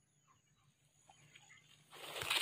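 Near silence: faint outdoor ambience with a thin steady high tone and a few faint, short chirps scattered through.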